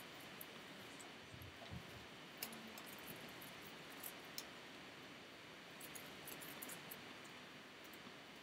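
Near silence: the room's steady faint hiss, broken by a few small scattered clicks and a couple of soft low knocks in the first two seconds.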